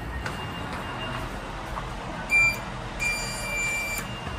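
Hitachi lift's car-panel buttons beeping as they are pressed: one short high electronic beep about two and a half seconds in, then a longer, steady beep of about a second near the end, over a low steady hum.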